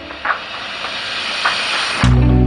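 A steady, even outdoor hiss, with a couple of faint soft knocks about a quarter second in and about a second and a half in.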